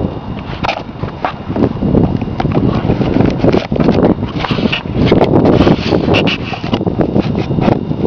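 Wind buffeting the microphone in uneven gusts, with scattered rustles and clicks from hands fitting the battery and wiring into an RC flying wing.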